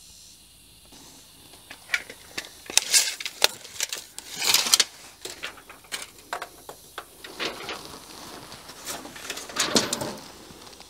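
Short clicks and brief rasps of a steel tape measure being drawn out and handled against a wooden wall, the loudest rasps about three and four and a half seconds in and again near the end.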